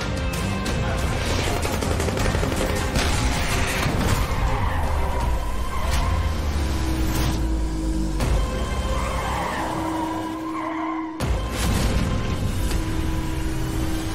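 Action-score music over a car engine running hard and tyres skidding, with wavering tyre squeals about four and ten seconds in.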